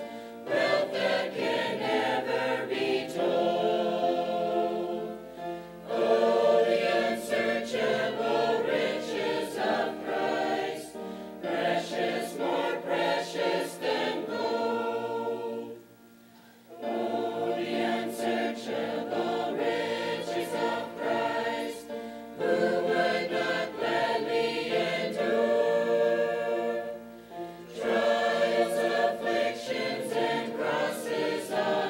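Mixed choir of men and women singing in phrases a few seconds long, with short breaks between them and one pause of about a second around the middle.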